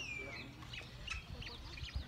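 Birds calling in the trees: a falling whistled note at the very start, then scattered short high chirps.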